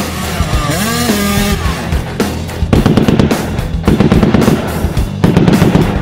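Cartoon soundtrack: background music with a motorbike engine revving, followed from about three seconds in by two stretches of rapid, rattling gunfire.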